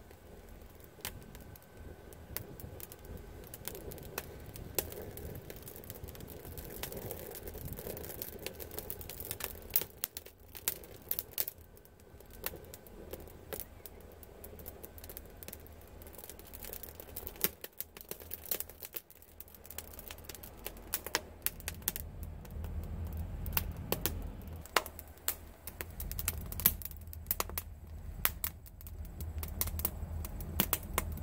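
Damp scrap-lumber kindling crackling as it catches in a wood fire, with many irregular sharp pops and snaps. A low rumble builds in the second half as the fire grows.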